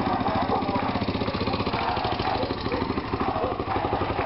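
Police motorcycle engine running steadily close by, with a fast, even pulse.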